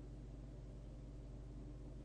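Faint steady low hum with light hiss, with no distinct events.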